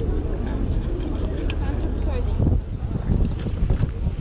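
Steady low rumble of a passenger ferry underway, with wind buffeting the microphone in gusts from about halfway through and indistinct voices in the background.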